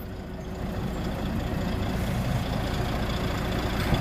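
Volvo D12 inline-six diesel of a heavy truck tractor idling steadily, a low even rumble that grows slightly louder toward the end.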